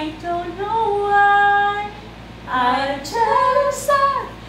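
Women's voices singing a song unaccompanied, with a long held note, a short break about two seconds in, then more singing.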